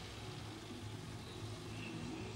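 A Nissan sedan taxi driving along a street, its engine running steadily.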